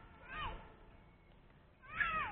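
Two short, faint, high-pitched mewing calls: one falls in pitch about half a second in, and one rises and falls near the end.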